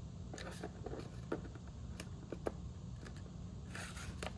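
Cardstock being handled as a folded paper hinge is lined up and pressed onto a card: a few light, scattered taps and rustles over a low steady hum, with a brief rustle near the end.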